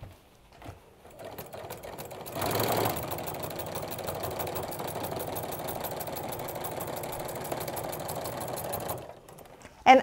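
Home sewing machine with a walking foot stitching a straight quilting line through the layers of a T-shirt quilt. It starts about a second in, is loudest briefly soon after, then runs steadily at a fast, even needle rhythm and stops about a second before the end.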